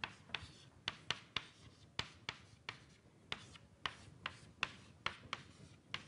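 Chalk writing on a blackboard: a quick, irregular run of sharp taps and short scrapes, a few each second, as a formula is written out.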